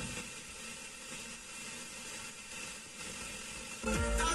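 Car radio tuned to 88.5 MHz FM, giving steady static hiss through its speakers with no clear station. Music cuts in loudly right at the end.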